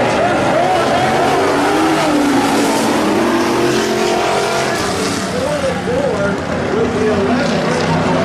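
A pack of street stock race cars' V8 engines running hard on a dirt oval, their pitch rising and falling as they ease off and accelerate through the turns.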